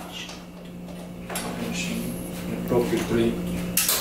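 Light clattering and handling of a hair-clipper kit on a table, plastic pieces being picked up and set down, over a low steady hum, with faint voices.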